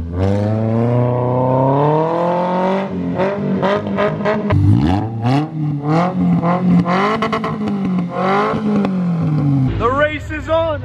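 Dune buggy engine revving under acceleration, its pitch climbing over the first three seconds, then rising and falling through repeated revs and dropping away near the end.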